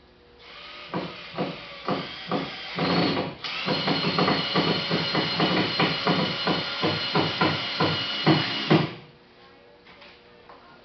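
A few knocks, then a power drill runs steadily for about five seconds, driving a screw into the wall overhead, and stops suddenly near the end.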